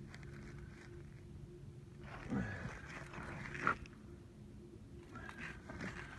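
New clear lake ice booming underfoot: a low call that bends down in pitch about two seconds in, followed by a sharp crack-like pop a little before four seconds.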